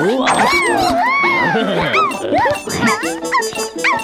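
High, squeaky wordless cries and yelps from small cartoon creatures, sliding up and down in pitch, over background music.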